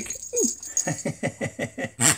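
A man's voice imitating a pig: one falling squeal, then a quick run of short grunting calls, about eight a second.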